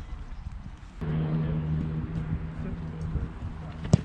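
A football placekick: the kicker's foot strikes the held ball with a sharp smack near the end, a second crack following close behind. Before it, a steady low hum runs from about a second in to about three seconds.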